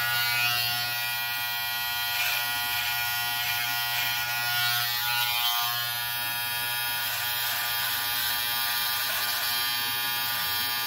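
Electric hair clipper running with a steady buzz as it trims hair around the ear and at the back of the neck.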